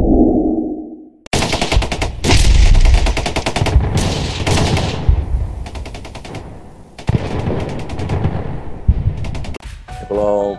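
Intro sound effects: a whoosh, then a sudden long volley of rapid machine-gun-style gunfire that trails off, with a second volley starting about three seconds before the end.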